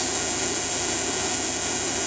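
Steady running noise with a strong, even hiss from the alternator and wireless Tesla coil test rig working under load on all three phases.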